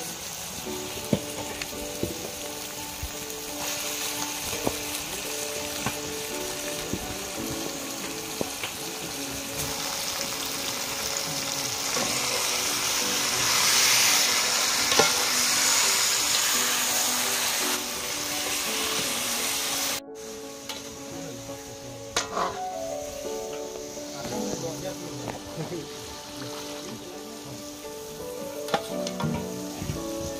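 Marinated chicken sizzling in hot oil with fried onions in a large wok, stirred with a metal ladle that clicks and scrapes against the pan now and then. The sizzling swells toward the middle, then drops sharply about two-thirds of the way through and carries on quieter.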